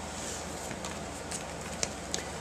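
A page of a handmade paper-and-chipboard mini album being turned on its metal binder rings: faint paper handling with a few light clicks, the sharpest near the end, over a steady low hum.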